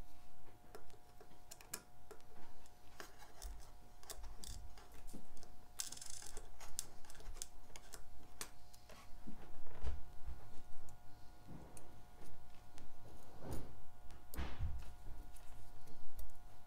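Irregular small clicks and taps of steel tweezers and watch parts against a watch movement and its metal movement holder while a wheel is fitted, with a brief rustle about six seconds in.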